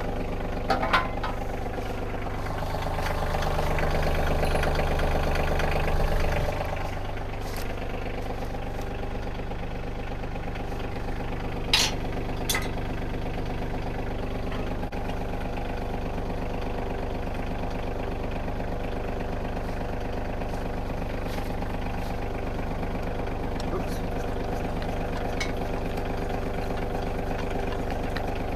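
A Kioti CK2610 compact tractor's three-cylinder diesel engine idling steadily, swelling louder for a few seconds near the start. Two sharp metal clinks about twelve seconds in come from a box blade being pinned to the tractor's three-point hitch by hand.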